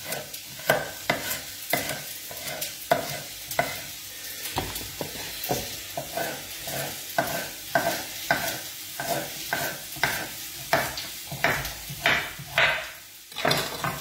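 Kitchen knife slicing a carrot on a wooden cutting board: a steady run of chops, about three a second, that stops shortly before the end.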